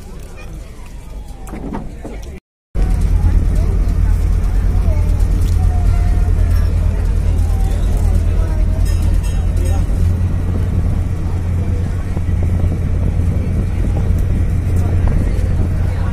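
Engine of a roll-on/roll-off ferry running steadily, a loud low drone, with people's voices behind it. The sound drops out for a moment about two and a half seconds in and comes back louder.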